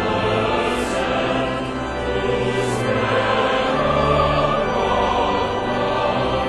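Large men's choir singing slowly in long held notes over deep sustained bass tones, with crisp 's' sounds about a second in and again near three seconds.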